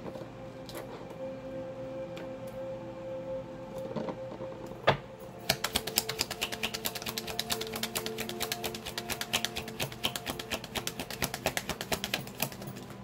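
Background music with sustained notes under a deck of oracle cards being shuffled by hand. A single sharp card click comes about five seconds in, then a quick, steady run of clicks from about five and a half seconds on.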